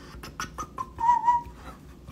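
A few quick light clicks, then a short, slightly wavering whistled note about a second in, as from a person whistling softly to himself.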